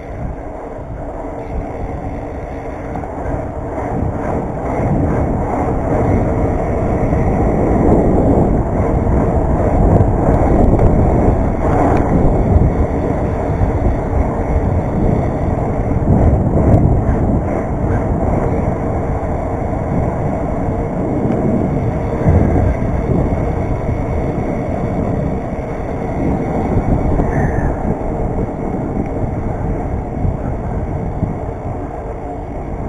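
BMX bike being ridden along an asphalt street: wind rushing over the camera microphone mixed with tyre rumble on the road, a steady rough noise that grows louder over the first several seconds as the bike picks up speed.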